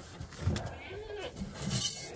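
A goat bleats faintly, one arched call about halfway through. Near the end comes a short rustle of a metal scoop going into a plastic grain bin.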